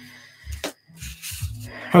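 Alcohol markers being handled on a drawing desk: a few short clicks and taps under a second in, as one marker is set down and another is picked up.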